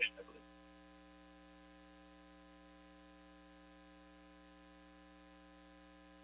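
Faint, steady electrical mains hum: a low buzz of several even tones that does not change, heard in a pause between speakers. The last syllable of a spoken word fades out in the first half-second.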